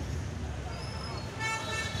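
Steady low background rumble with voices in the background, and a short horn toot about one and a half seconds in.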